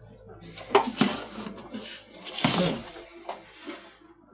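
Kangaroo-hide lace being drawn through the blade of a vise-mounted lace cutter, a rough scraping rub as the strip is trimmed to width. There are brief voice sounds about a second in and just past the middle.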